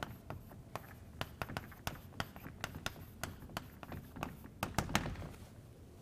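Chalk writing on a blackboard: a string of quick, light taps and short scrapes as words are written, with a few sharper taps near the end.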